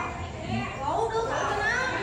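Children's voices talking and calling out, high-pitched.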